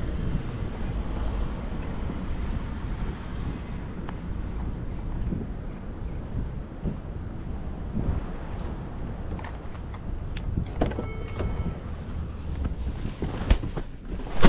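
Steady low outdoor rumble of wind and distant traffic in an open parking lot, with a few scattered light clicks. Near the end a car door is opened with a sharp knock as someone gets into the car.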